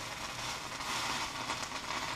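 Margarine-spread bread frying on a hot iron sandwich press (tostex) over a gas flame, sizzling with fine crackles as the margarine melts into the bread, loudest about a second in.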